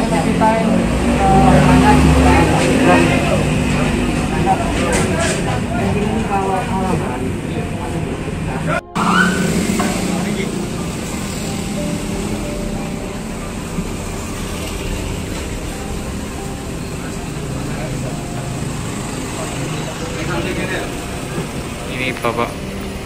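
Indistinct chatter of several voices for the first nine seconds, then a sudden cut to steady street traffic noise with passing motorcycles.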